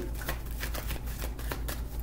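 A deck of tarot cards being shuffled by hand: a quick, steady run of soft card flicks and slides.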